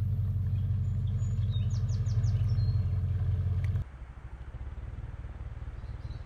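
Motorboat engine running steadily with a low drone, which cuts off abruptly about four seconds in, leaving a much quieter outdoor background.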